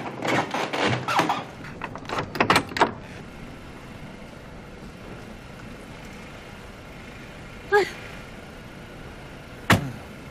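A door being pushed open and swinging shut, with several sharp clacks and knocks in the first three seconds. Then a car runs steadily in the background, and a car door shuts with a single thud just before the end.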